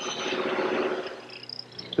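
Table-mounted router with a sash-making bit cutting the cheek of a tenon on a door rail. The cutting sound swells over the first second as the rail passes the bit, then fades away.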